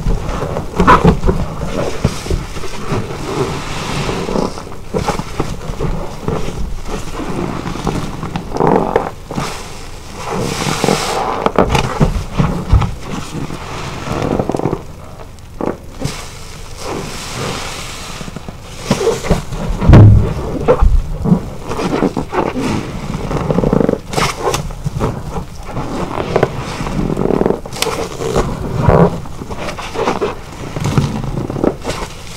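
A large car-wash sponge soaked in foamy detergent being squeezed and kneaded by gloved hands in a basin: wet squelching and sloshing in irregular surges, loudest about twenty seconds in.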